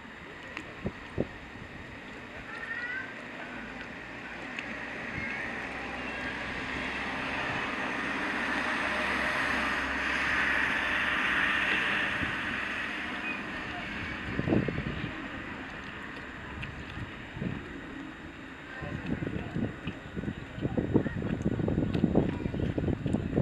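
Harbour waterside ambience: wind on the microphone and water moving around moored boats, as a steady hiss that swells to a peak about halfway through and eases off, with irregular low slaps or knocks of water near the end.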